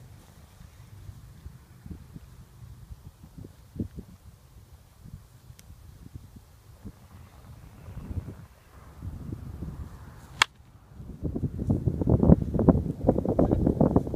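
A single sharp crack of a wooden fungo bat hitting a baseball, about ten seconds in. After it comes loud, low buffeting noise on the microphone.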